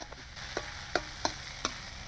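Chopped chillies sizzling in hot oil in a wok over a wood fire, with a steady hiss. A metal spatula stirring them clinks against the wok four times.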